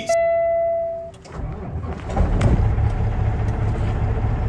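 Outro sound effects: a single bright chime tone rings and fades over about a second, then a loud low rumble builds up and holds.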